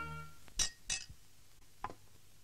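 A metal spoon clinking against steel dishes as food is served: three short, sharp clinks, two close together about half a second in and a third near the end.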